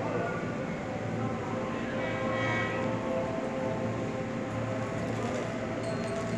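Railway station platform ambience: a steady electric hum held on a few even tones over a constant background noise, with faint distant voices.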